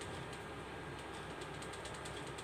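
Faint scratching of a pen writing on paper over a steady background hiss.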